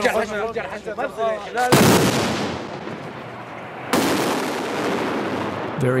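Two loud blasts of weapons fire about two seconds apart, each followed by a long echo that slowly dies away.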